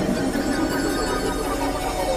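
Experimental electronic synthesizer music: a dense, steady layer of many held tones and drones over a noisy hiss, at an even level and with no beat.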